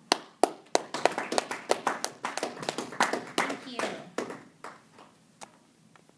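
A small audience applauding by hand, a quick run of claps that thins out and stops about five seconds in.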